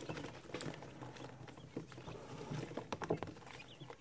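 Faint, irregular light tapping and scratching from a brood of day-old Pharaoh quail chicks pecking at feed and moving about on paper towels.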